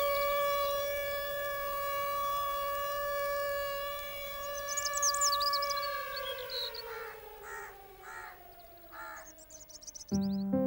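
A siren-like wail holds one steady pitch, then winds down, sliding lower over the last few seconds. Crows caw and small birds chirp over it.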